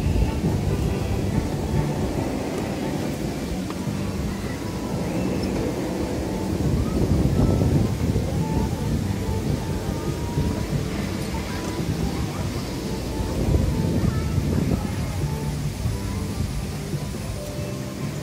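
A kids' roller coaster train rumbling along its steel track, swelling twice as it passes, over steady background music.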